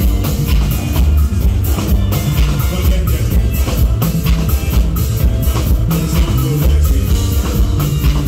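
Live rock band playing loud: electric bass guitar, electric guitar and drum kit, with a heavy bass line and a steady drum beat.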